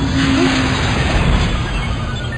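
Rumbling, rushing noise of a spaceship sound effect, like an engine running, with no clear rhythm.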